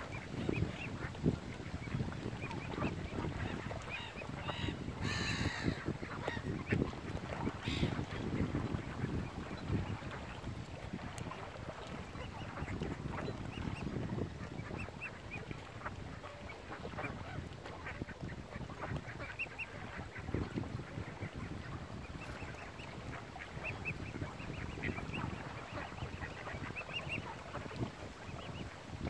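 Waterfowl calling at close range, from mute swans with their cygnets and mallard ducks: many short high calls scattered throughout, and a brief louder, harsher call about five seconds in. Under them is a steady rumble of wind and water.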